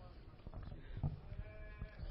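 Faint voices in the hall, with a couple of soft knocks about a second in and near the end.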